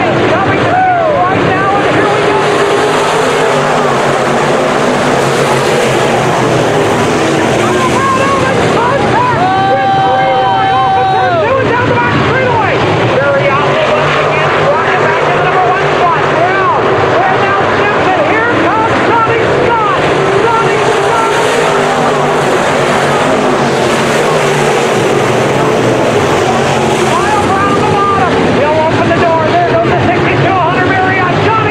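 A field of dirt-track Modified race cars running hard around the oval, their V8 engines rising and falling in pitch as cars pass and go through the turns, loud and continuous. About ten seconds in, one steady high note stands out above the pack for a couple of seconds before falling away.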